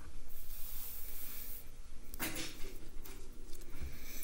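Oracle cards and hands moving on a wooden table: soft rustling, with one brief sliding scrape a little past two seconds in.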